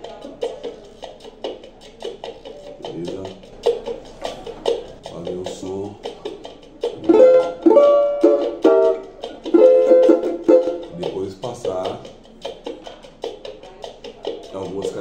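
Oliver banjo with a 10-inch body being strummed and picked, a bright plucked-string sound. It runs softly at first, swells into louder strummed chords from about seven to eleven seconds in, then drops back to lighter playing.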